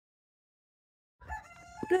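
Silence, then a bit over a second in a rooster crowing faintly, one held call, just before a woman starts speaking.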